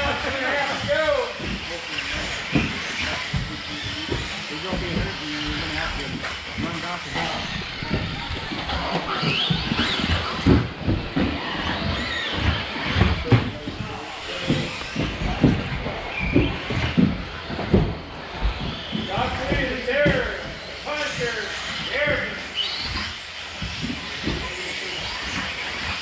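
1/10-scale electric 2WD RC buggies with 17.5-turn brushless motors racing on an indoor carpet track: motors whining up and down in pitch and chassis clacking as the cars land off jumps, under indistinct voices.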